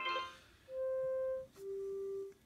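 Arduino-built OctoAlert toy box beeping the notes of its Simon memory game through its small speaker: a short burst right at the start, then a steady higher beep of under a second, followed by a lower beep.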